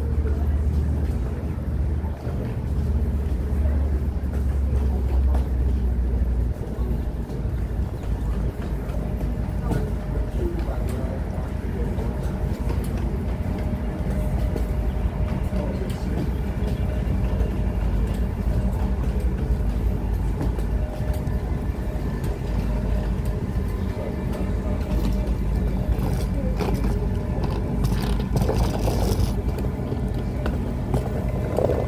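Train station walkway ambience: a steady low rumble, with wheeled suitcases rolling over concrete and faint voices of passengers walking.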